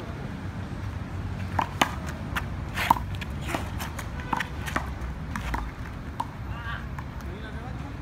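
Handball rally: a small rubber ball slapped by hand and smacking off the wall and ground, a string of sharp smacks at irregular intervals, two of them much louder than the rest.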